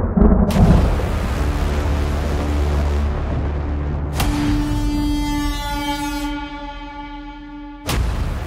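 Cinematic intro music with a deep rumbling boom and sharp hits about half a second in and again around four seconds, the second hit leaving a held tone that fades out, before a final sharp hit at the end.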